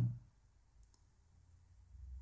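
Near silence: quiet room tone with a faint click a little before a second in.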